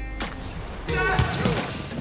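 Basketball bouncing on a hardwood gym floor during a pickup game, with sneakers squeaking and indistinct players' voices, the gym noise growing louder about a second in.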